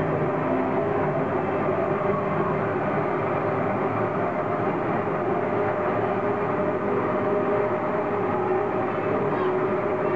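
Small amusement-park ride train running along its narrow track: a steady running noise with a faint, constant hum.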